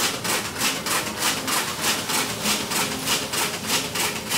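Newman's motor, Big Eureka, running with a steady, rhythmic rasping pulse about three to four times a second.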